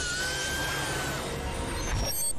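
Cartoon sound effect of a magic portal opening: a sudden loud rush of noise, with a high steady tone over it for about the first second.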